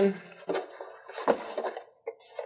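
Long cardboard box of server rack rails being handled and its lid closed: a few short knocks and scrapes of cardboard, with soft rustling between.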